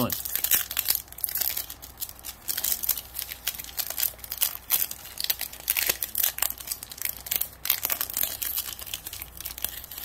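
Foil wrapper of a Bowman Chrome baseball card pack crinkling and tearing as it is worked open by hand, in irregular bursts of crackle.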